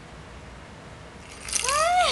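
Faint room hiss, then near the end a shaken baby toy jingles, together with an excited high-pitched exclamation rising in pitch.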